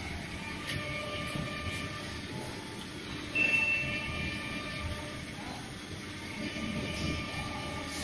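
Heavy-duty engine lathe running, turning a long steel shaft: a steady mechanical rumble with a faint gear whine. A short, high-pitched squeal rings out about three and a half seconds in.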